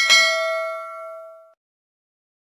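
Notification-bell sound effect for a subscribe animation: a single bright bell ding that rings out and fades away over about a second and a half.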